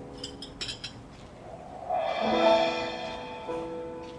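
Piano and guitar playing a slow song introduction, holding sustained chords, with a few light clicks in the first second and a fuller chord swelling in about two seconds in.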